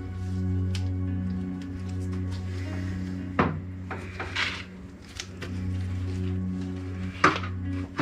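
Background music of steady held tones, with a couple of sharp clunks, about three and a half and seven seconds in, as a steel window winder regulator is worked into a classic Mini's door shell.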